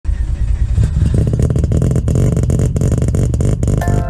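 A racing car engine running loudly with a rapid pulsing. Music with piano-like notes comes in just before the end.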